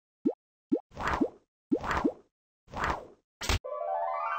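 Cartoon sound effects: short plopping pops that rise in pitch, about two a second, then three swishing bursts with pops inside them, a sharp hit, and a rising chime-like sweep starting near the end.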